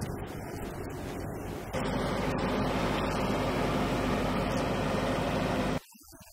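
Truck engine running steadily with a low hum. It steps up louder about two seconds in and cuts off abruptly just before the end.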